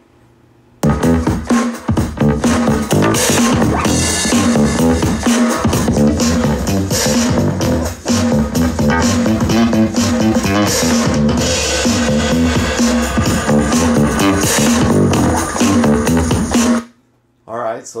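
Royalty-free music streamed over Bluetooth and played through a Bose TV Speaker soundbar. It starts about a second in and stops abruptly about a second before the end.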